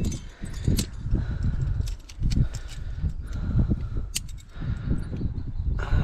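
Wind buffeting the microphone as a low, uneven rumble, with scattered sharp clicks and clinks of metal climbing gear (carabiners and a belay device) being handled at the anchor.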